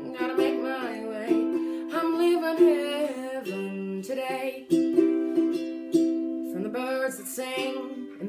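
A woman singing to a strummed ukulele. Her voice drops out for about a second a little before the middle while the ukulele chords ring on, then the singing comes back.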